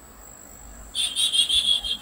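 A high-pitched, rapidly pulsing insect trill, steady in pitch, starting about a second in.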